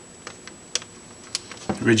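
Three sharp plastic clicks and crinkles as a plastic model-kit chopper frame is handled inside its clear plastic bag, the middle one loudest. A man's voice starts near the end.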